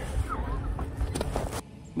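Handling noise as a small catfish is lifted in a padded unhooking cradle: a low rumble with a few sharp knocks a little after a second in, then it drops quieter.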